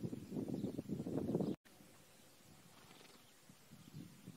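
A horse making a low, rough, fluttering sound that cuts off abruptly about a second and a half in, leaving only faint background noise.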